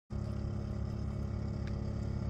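A steady low mechanical hum, like a motor running at constant speed.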